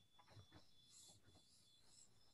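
Near silence: faint room tone from a video-conference call, with a thin steady high-pitched tone.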